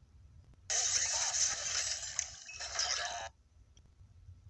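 Movie-trailer sound of a chaotic kitchen, with pans clattering and a pan in flames, heard through a speaker. It is a loud, noisy burst about two and a half seconds long that starts and stops abruptly.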